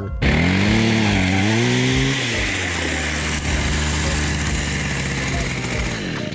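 Power ice auger running as it drills a hole through lake ice: its pitch rises and falls over the first two seconds, then it holds steady until it stops at the end.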